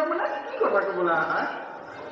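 Speech only: a person's voice speaking.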